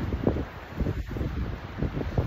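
Wind buffeting a phone's microphone in uneven low gusts.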